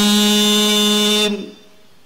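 A man's voice holding one long, steady melodic note of Qur'an recitation (tilawah) through a microphone, ending about a second and a half in; after that only low room tone.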